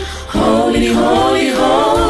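Mixed male and female gospel choir singing in harmony. The voices dip briefly at the start and come back in full about a third of a second in.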